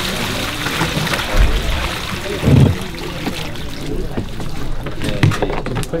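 Stagnant water pouring and splashing out of a tipped-over old refrigerator body onto wet ground. Two dull thumps come about a second and a half and two and a half seconds in, and the pouring thins out over the last seconds.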